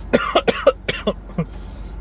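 A person coughing, a rapid run of short coughs in the first second and a half.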